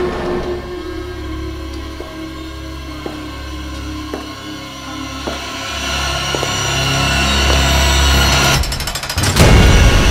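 Dark, suspenseful soundtrack music: a low held drone with faint ticking hits about once a second, swelling louder over the last few seconds. It breaks off briefly and then comes back in with a loud hit near the end.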